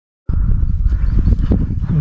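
Wind rumbling on a small action-camera microphone, with several knocks and bumps of the camera being handled. It cuts in suddenly about a quarter second in.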